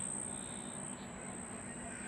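A steady high-pitched trill over a faint even hiss, dimming briefly a little under a second in.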